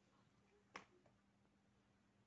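Near silence: room tone with a faint steady hum, broken once by a single short, sharp click about three quarters of a second in.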